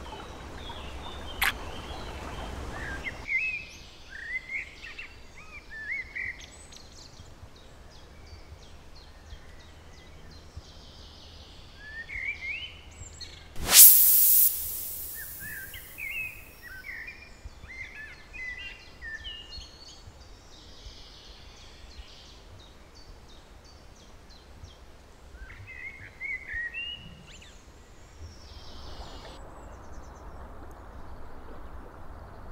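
Wild songbirds singing in short chirping phrases. A rushing noise fills the first three seconds, a sharp click comes at about a second and a half, and about halfway through there is a sudden loud burst of noise, the loudest thing heard.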